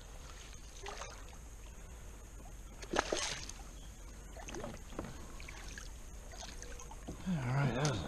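A hooked smallmouth bass splashing at the water's surface beside the boat: a few brief splashes over quiet water, the sharpest about three seconds in. A man's voice starts near the end.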